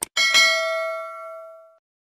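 A short click, then a bright bell ding struck twice in quick succession that rings out and fades over about a second and a half: an on-screen notification-bell sound effect.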